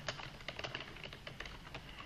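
Faint computer keyboard clicks in quick succession over low room noise.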